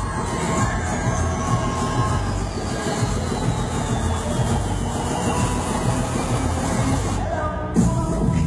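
Loud K-pop dance track played over a stage sound system, with crowd noise underneath. A high sweep falls in pitch about two to four seconds in, and near the end the track briefly thins out before a loud hit brings the beat back.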